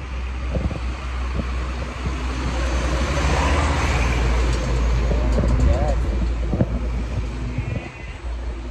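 Street traffic with a motor vehicle passing close by: a broad engine-and-tyre noise swells through the middle and eases off near the end, over a steady low rumble.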